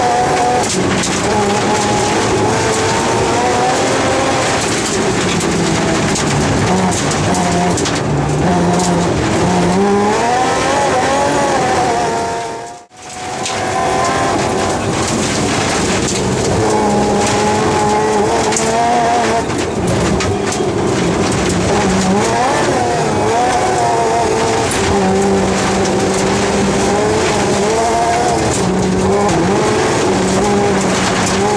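BMW M3 rally car's engine heard from inside the cabin at full stage speed, its pitch repeatedly rising and falling as the driver accelerates, lifts and changes gear. The sound fades out briefly and back in about 13 seconds in.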